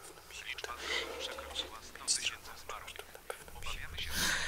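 A man whispering, in short, broken phrases.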